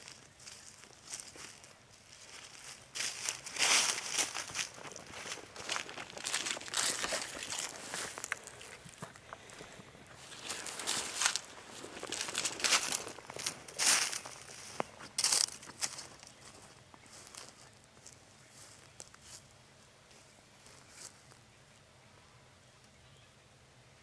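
Footsteps crunching and scuffing through dry fallen leaves: an irregular run of crunches that thins out and fades over the last few seconds.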